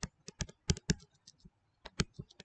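An irregular run of short, sharp clicks, about four a second, from a stylus tapping and sliding on a tablet or touchscreen as a word is handwritten.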